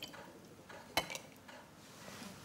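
A single light click or clink about a second in, from a card being slid out from between two stacked glass jars of water; otherwise quiet.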